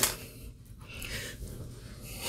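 Faint rustling and shuffling of a person moving and sitting down in a padded chair, over quiet room tone.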